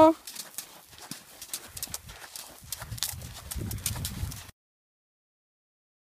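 Hoofbeats of a ridden Friesian horse, a scatter of light strikes and thuds, until the sound cuts off abruptly about four and a half seconds in.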